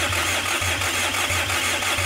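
Kia Sorento 2.5-litre turbodiesel (D4CB) being cranked over on the starter without firing, to pump oil through it. The cranking beat is uneven, which the mechanic takes for low compression in one cylinder from hydraulic lash adjusters not yet pumped up.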